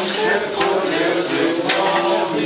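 A group of people singing together in slow, held notes.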